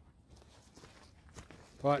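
Faint footsteps on leaf-littered ground, soft scattered rustles with one sharper step about a second and a half in, followed by a man saying "Right" at the very end.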